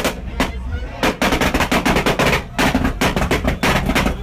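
A stationary car's exhaust banging and popping in rapid, irregular cracks, coming thicker and faster in the second half, as the engine is held against a launch rev limiter.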